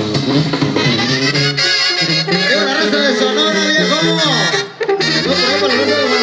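A live banda sinaloense brass band plays an instrumental passage: a brass melody over a low bass line. There is a short break about three-quarters of the way through.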